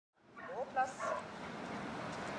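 A dog giving about three short, high-pitched yelps in quick succession, all within the first second or so.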